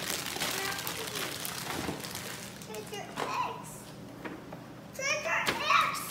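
Young children's voices and play noises: short high-pitched calls about three seconds in and again near the end, after a brief rustling noise at the start.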